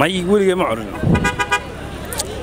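A short car horn toot about a second in, among the noise of a busy street.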